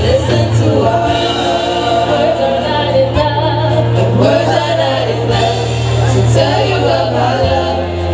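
Gospel singing by a small group of vocalists on microphones, with keyboard accompaniment and a sustained low note underneath.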